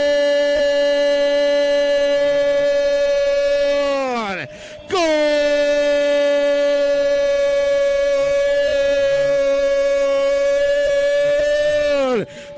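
Football radio commentator's goal call: a man's voice holding a long, steady 'gol' shout that drops in pitch and breaks off about four seconds in, then after a quick breath a second long held shout that falls away near the end.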